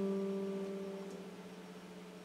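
An electric guitar chord left ringing, its notes dying away steadily until only a faint low note remains.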